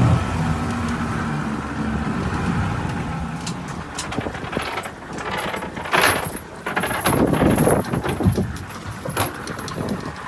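Small passenger boat under way at sea: its engine runs steadily under a loud rush of wind and water, with scattered knocks and rattles from the hull and canopy frame on choppy water.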